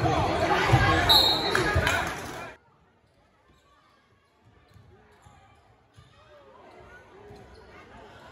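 Crowd talking in a gym, with a few knocks of a basketball bouncing on the hardwood floor. The sound cuts off suddenly after about two and a half seconds, leaving near silence, and faint crowd noise slowly comes back.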